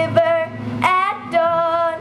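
A young girl singing a slow country song live, holding long notes, over acoustic guitar.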